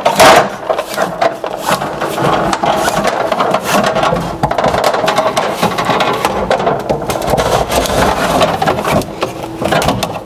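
A cable fishing tool's tape being pulled back down through a wooden bookshelf cabinet, dragging an electrical cable with it: continuous scraping and rattling with many small clicks as the tape and cable rub along the wood.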